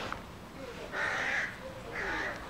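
A single hoarse animal call about a second in, lasting about half a second.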